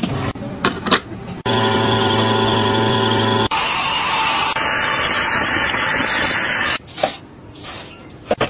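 Clicks from a plastic lid being shut, then a small electric motor humming steadily for about two seconds. A cordless stick vacuum cleaner then runs with a hiss and a thin high whine, cuts off sharply, and is followed by light scrapes and clicks of a broom and dustpan.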